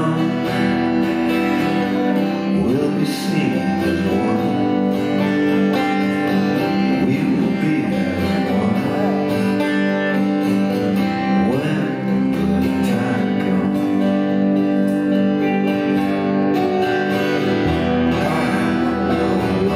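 Live band performance: guitars playing a steady song while a man sings lead vocals into a microphone.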